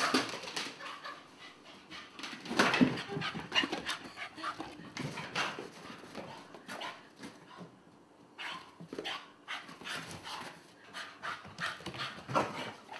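A dog panting hard while playing with a ball, with irregular knocks and scuffs of the ball and paws on the floor, the loudest about three seconds in.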